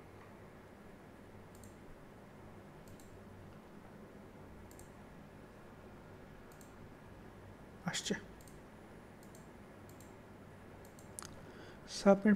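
Faint computer mouse clicks scattered over a low steady room hum, with a louder click about eight seconds in and several more close together near the end.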